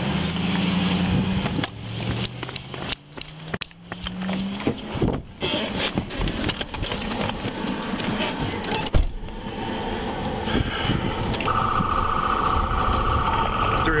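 Body-camera handling and movement noise as the wearer climbs into a Ford patrol car, with a sharp knock about nine seconds in. A steady high electronic tone starts near the end and keeps on.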